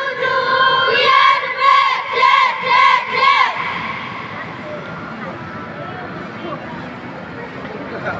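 A group of young voices shouting a chant in unison: a string of drawn-out syllables, each rising and falling, for about three and a half seconds, then giving way to a lower wash of crowd noise.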